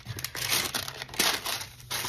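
A sheet of greaseproof paper rustling and crinkling as it is handled and smoothed flat. The rustle comes in uneven spells and eases briefly near the end.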